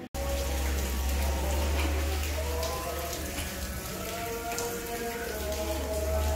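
Rain falling and dripping, with many small drop ticks over a steady low rumble and faint voices of people nearby.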